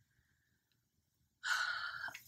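Near silence, then about a second and a half in, a woman lets out a short audible sigh.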